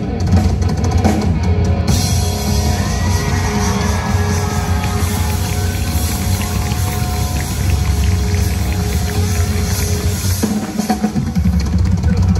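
Live rock band playing loudly: drum kit, electric guitars, bass and keyboard. The low end drops out for about a second near the end, then the full band comes back in.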